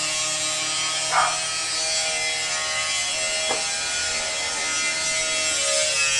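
An electric power tool's motor running steadily with a high whine, with a short sharp knock about three and a half seconds in.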